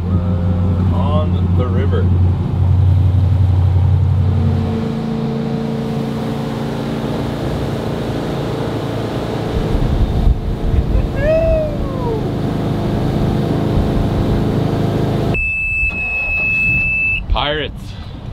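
A jet boat's engine running as the boat gets under way: a steady low drone that shifts to a higher, steady pitch about five seconds in. Near the end the engine sound cuts off suddenly and a single steady high electronic beep sounds for about a second and a half.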